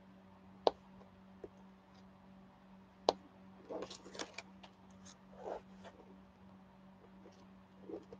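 Diamond-painting drill pen setting resin drills into very sticky canvas adhesive. Two sharp clicks about two and a half seconds apart, with a fainter one between, then short runs of soft crackling ticks. The canvas glue is very sticky, which makes the placing noisy.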